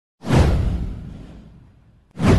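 A cinematic whoosh sound effect with a deep low boom. It starts suddenly a moment in and fades away over about a second and a half.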